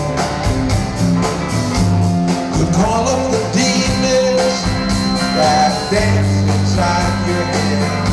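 Live rock band playing an instrumental passage: electric guitar over sustained bass notes and a steady beat.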